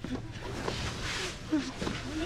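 Cloth hoods pulled off prisoners' heads, a brief rustling swish about a second in, among short gasps and murmurs from the prisoners.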